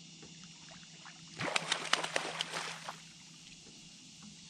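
A hooked catfish thrashing and splashing at the surface beside the boat as it is reeled in: a burst of sloshing splashes lasting about a second and a half, starting about a second and a half in.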